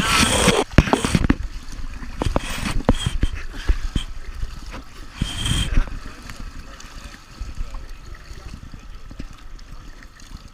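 Pool water splashing and slapping against the gutter right at the microphone as swimmers reach the wall and push off: a loud splash at the start and another about five seconds in, with sharp slaps between, then a softer wash of lapping water.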